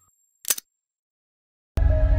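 A single short click, like a camera-shutter sound effect from the channel's logo sting, about half a second in. Near the end, soft background music with held notes starts abruptly.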